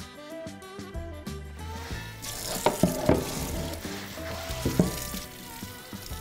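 Background music with a steady bass line, joined about two seconds in by a steady hiss of water with a few sharp clicks and knocks.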